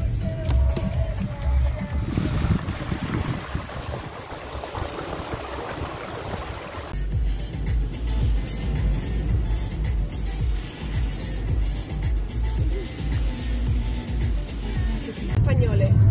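Music playing inside a moving car over the low rumble of the road. For several seconds starting about two seconds in, a hiss of tyres spraying through standing floodwater.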